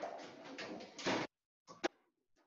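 Rustling and scraping from handling things at a kitchen counter, in a few surges, cutting off about a second and a quarter in. Two sharp clicks follow near the end.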